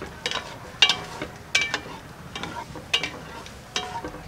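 Scattered light clicks and crackles of a plastic vinegar bottle being handled and tipped over a glass jar.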